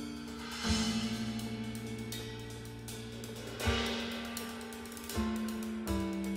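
Jazz trio of piano, bass and drum kit playing together: held piano-and-bass chords struck about a second in, near four seconds and again past five seconds, over continuous cymbal and hi-hat strokes.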